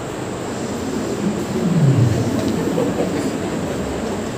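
Steady low rumble and hiss, with a short falling tone about one and a half to two seconds in.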